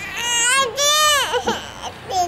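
A young child crying out in a high voice: two long wailing cries, each rising and then falling, followed by a few short broken sounds.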